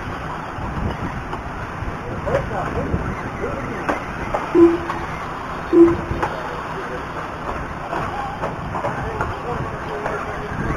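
Electric 2WD short-course RC trucks running on a dirt track, their motors whining faintly under a steady wash of outdoor background noise. Two short, low beeps sound about a second apart near the middle.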